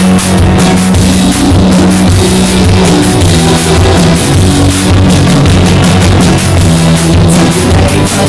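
Live rock band playing with drum kit, electric bass, electric guitar and electric keyboard. The recording is loud and saturated, with distorted sound.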